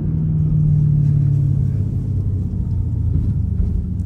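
Supercharged 6.2-litre LT4 V8 of a 2020 Chevrolet Camaro ZL1 1LE, heard from inside the closed cabin while driving at low speed. It makes a steady low drone that sinks slightly in pitch, over road rumble.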